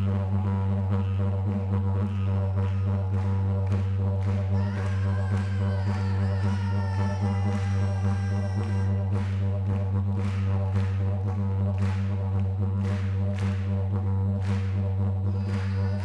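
Yolngu yidaki (didgeridoo) playing one low, unbroken drone. From about halfway through it is joined by regular sharp strikes of clapsticks.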